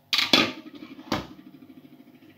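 Hard plastic clicks and knocks as a small food processor's lid and bowl are handled on the worktop: two quick sharp clicks close together, then one more about a second later, followed by faint small rattles.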